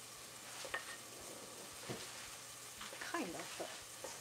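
Stir-fried bok choy and Chinese cabbage sizzling in a stainless steel pot, with a couple of light taps of a wooden spatula in the first two seconds. A faint voice comes in briefly near the end.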